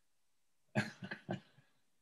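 A man's brief non-speech vocal sound: a few quick breathy bursts from his throat about a second in, the first the loudest, all over in under a second.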